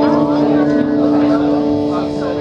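Live rock band's amplified electric guitars sustaining a held, ringing chord, a steady drone in the opening of the song.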